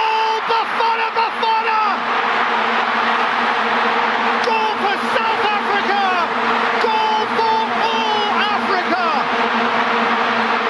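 Loud, continuous crowd-like din with raised, high-pitched voices calling out over it in stretches near the start and again from about halfway through.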